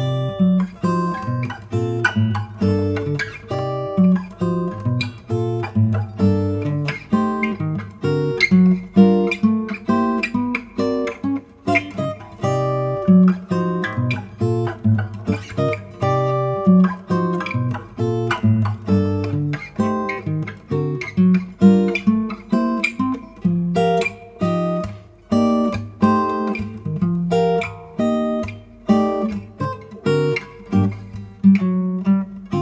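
Solo steel-string acoustic guitar played with the fingers: a melody picked over bass notes and chords, several plucked notes a second without a break.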